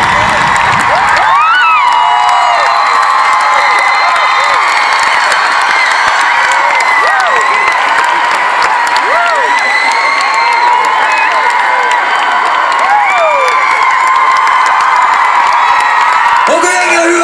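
Large concert crowd cheering, with many high-pitched screams rising and falling over a steady roar of voices and clapping. The music's bass drops out about a second in, leaving the crowd alone.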